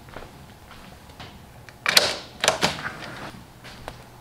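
A few short, sharp clicks and rustles over a quiet room. The loudest comes about two seconds in, two more follow about half a second later, and a last one comes near the end.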